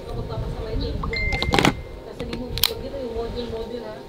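Hands handling an underwater camera housing, with a few sharp clicks of its parts, the loudest about halfway through. A short high beep sounds a second in, under low voices.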